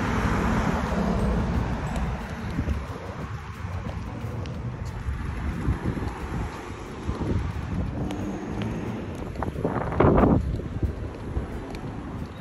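Wind rumbling and buffeting on a phone microphone, with a noisy outdoor hiss underneath and a brief louder burst of noise about ten seconds in.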